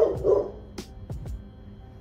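A dog, upset by people in its yard, barks twice in quick succession at the start. Background music with a deep bass beat plays throughout.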